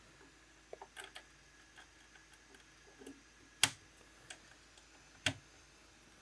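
Patch cable plugs being pulled from and pushed into the 3.5 mm jacks of a Eurorack modular case: a scatter of faint clicks, the loudest a little past halfway.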